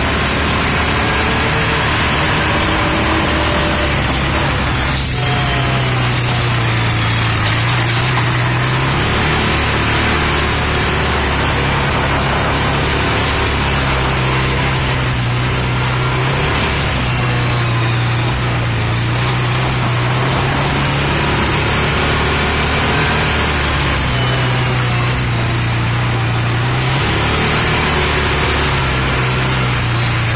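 Off-road side-by-side engine running under way, its low drone stepping up and down in pitch every few seconds as the throttle changes, under a steady rush of noise. A few brief knocks in the first several seconds.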